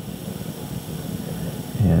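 Steady room noise with a pencil writing on paper, no distinct strokes standing out.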